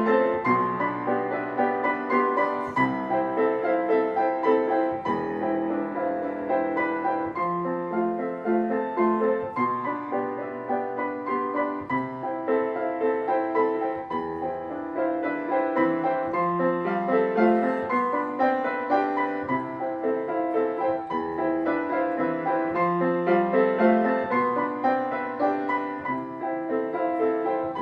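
Grand piano played solo, a continuous stream of fast repeating broken-chord figures.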